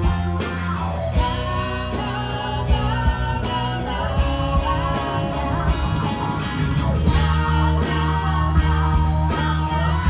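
Live rock band playing: electric guitars, bass and drums with vocals, and a cymbal crash about seven seconds in.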